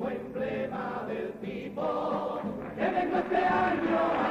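Male comparsa choir of the Cádiz carnival singing a song in several-voice harmony, louder from about three seconds in.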